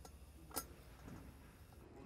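Near-silent room tone with one faint click a little after half a second in.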